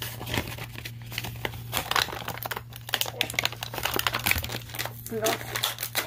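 Plastic blister packaging and cardboard backing of a die-cast toy car crinkling and crackling irregularly as the package is opened by hand.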